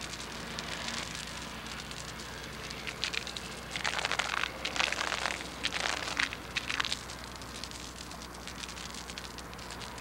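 A steel chain dragged across a concrete bridge deck, making a dense scraping rattle of links on the surface that grows loudest for about three seconds in the middle. This is chain-drag sounding: a change to a hollow sound marks delaminated concrete that needs deck prep or repair.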